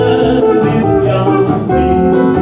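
Live small band of guitar, upright double bass and piano playing a slow ballad, with sustained melodic notes over a steady bass line.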